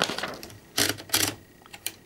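Platen and feed rollers of a 1930s Underwood No. 5 typewriter being turned to feed a sheet of paper through, giving two short clicking bursts about a second in and a single click near the end.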